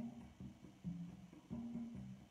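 Soft background music of slow plucked-string notes, a new low note starting about every half second and fading away.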